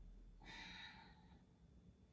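A woman's faint exhale, about a second long, breathing out under the strain of holding an abdominal boat-pose hold.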